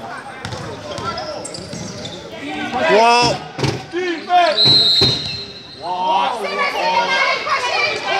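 Basketball game in an echoing gym: loud shouting from players and spectators, with the ball bouncing on the court. About halfway through, a referee's whistle blows once, a steady high tone lasting about a second, stopping play.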